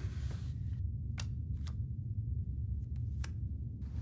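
Steady low hum with four light, sharp clicks of playing cards and chips being handled on a poker table, spread across the few seconds.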